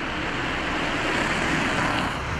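A car passing along the street: its tyre and engine noise swells and then eases, over a steady low traffic rumble.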